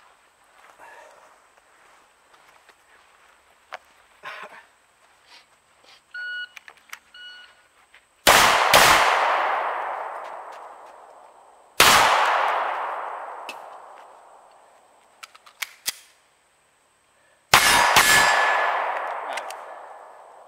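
A shot timer's beeps, then handgun shots fired in quick clusters of double taps, each cluster trailing off over a few seconds. There is a short break for a magazine change before the last cluster.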